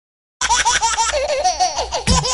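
A baby laughing in quick, high-pitched bursts, starting about half a second in, then sliding into a wavering, lower-pitched giggle.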